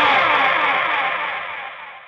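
The song's final distorted electric guitar chord ringing out and fading away, with a repeating falling sweep running through it.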